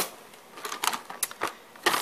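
A few sharp clicks and light clacks, irregularly spaced, from a clear plastic case of wood-mounted rubber stamps being picked up and handled.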